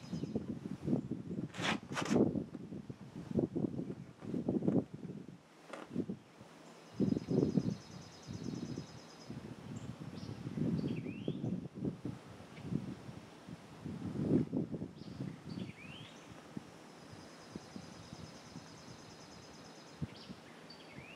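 Soft, irregular rustling and handling noises come and go. Birds trill and chirp a few times in the background.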